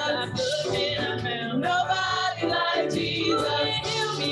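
A group of women singing a gospel song together into microphones, several voices in harmony.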